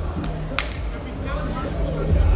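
Background music with a steady bass line under faint voices in a large hall, with one sharp click about half a second in.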